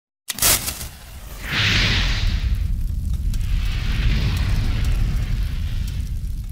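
Logo-intro sound effect: a sharp crack just after the start, then a heavy boom with a hissing rush about a second and a half in, and a low rumble that carries on under a second hissing swell.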